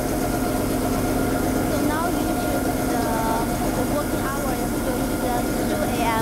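Street sweeper running: a steady mechanical hum with several constant tones from its motors, with faint voices behind it.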